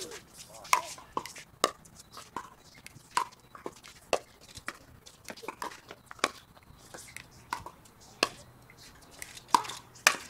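Pickleball paddles hitting a hard plastic ball in a fast rally, a run of sharp, hollow pocks about every half second with uneven loudness.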